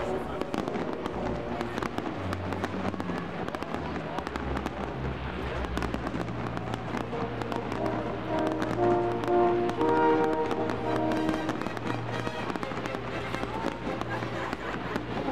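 Fireworks bursting with rapid crackling and popping, heard under classical music with held notes and a bass line. The music grows louder about two-thirds of the way through.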